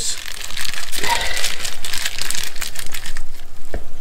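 Thin plastic bag crinkling as gloved hands unwrap a coral frag from it: a dense, continuous run of small crackles.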